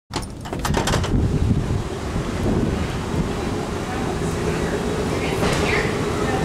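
Metal door latch clicking several times in the first second, then a steady low rumbling noise with a faint hum.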